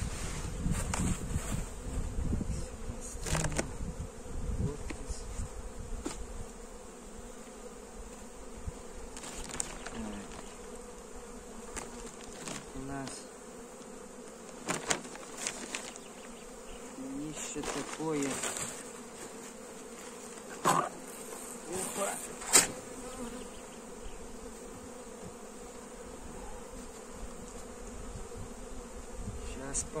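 Honeybees buzzing around an opened hive in a steady hum. Several sharp knocks and clicks from hive parts being handled cut through it, the loudest two about three quarters of the way through.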